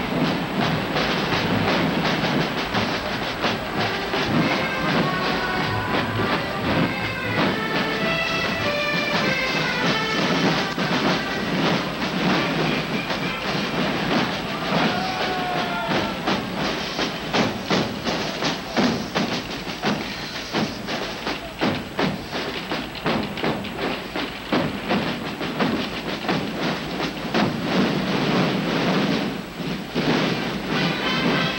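Massed parade drums of a large French drum corps playing a rapid, continuous cadence, with a few short melodic notes sounding over them in the first half.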